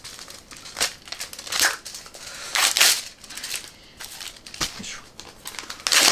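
A paper TOEIC score report being torn by hand: about half a dozen short rips with crinkling between them, the longest and loudest rip about halfway through.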